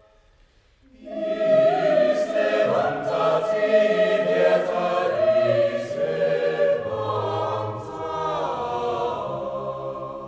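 Mixed chamber choir singing a cappella, men's and women's voices together. After a brief near-silent pause the full choir comes in about a second in, then fades near the end.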